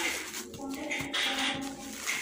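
Plastic cling film crinkling as it is peeled off a foam food tray, in two short bouts, with faint music in the background.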